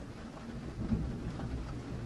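Rain falling steadily, with a low rumble underneath and a slight swell about a second in.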